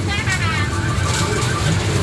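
Electronic sound effects from a coin pusher arcade machine: a tone falling in pitch, then a quick run of repeated beeps, as free tokens are awarded. A constant low arcade din sits underneath.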